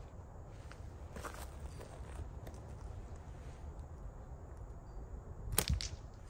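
Faint clicks of a metal slingshot trigger release being locked and handled, then, about five and a half seconds in, two sharp snaps close together as the trigger lets go and the slingshot's bands fire a quarter-inch steel ball.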